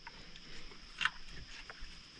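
Faint handling of a plastic ignition-coil wire connector on a Rotax engine, with a light click about a second in.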